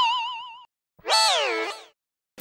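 Two cartoon sound effects. First a wobbling, boing-like tone that fades away; then, after a short gap, a second tone that rises briefly and then slides down in pitch.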